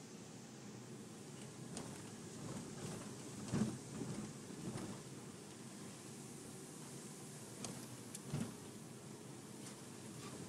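Cabin noise inside a Toyota Prado driving along a rough dirt track: a steady low engine and road rumble with occasional knocks and rattles. The loudest knock comes about three and a half seconds in and another near eight and a half seconds.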